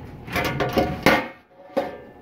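Clattering knocks of a rabbit nest box and wire cage being handled: several sharp clacks with a short ring, the loudest a little after a second in and another near the end.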